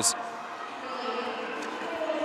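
Sports-hall ambience during a roller derby jam: a steady murmur of distant voices with a few faint knocks of skates and players on the wooden court floor.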